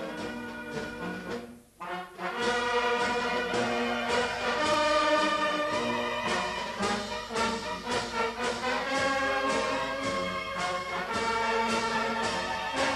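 Brass band music, a Portuguese filarmónica, playing with a steady beat. It breaks off briefly just before two seconds in, then comes back louder.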